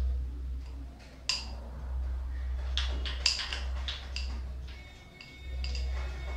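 Carrom striker shot: a sharp clack about a second in, then a quick run of clicks around the three-second mark as the striker and coins knock together and against the board's wooden frame. A steady low hum runs underneath.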